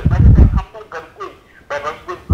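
A person's voice coming through badly distorted, as over a poor phone line, with a loud, rough low burst in the first half second.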